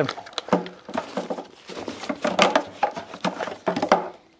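Plastic clicks, knocks and rustling of a coiled extension cable and its blue camping plug being handled and packed into a plastic crate.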